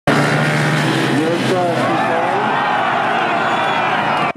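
Ice speedway motorcycles racing on an ice track, their engines running loud and steady, with the pitch rising and falling as they go round.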